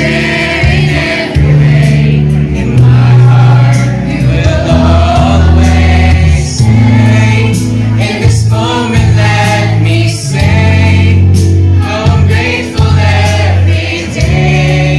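Children's choir singing through microphones over an accompaniment with long, changing bass notes.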